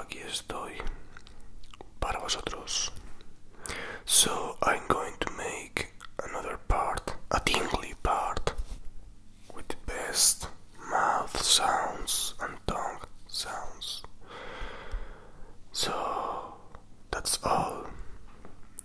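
Close-miked ASMR mouth and tongue sounds: wet clicks, smacks and tongue pops in irregular bursts, mixed with breathy, whisper-like sounds.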